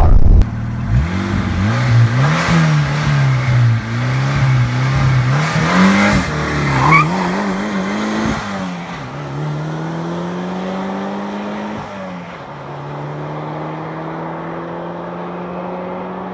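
Turbocharged Lada Niva running on LPG, with its boost set to 1.1 bar, launching and accelerating hard. The engine note climbs and drops several times through the gear changes, then settles into a steadier, slowly rising note that fades as the car pulls away.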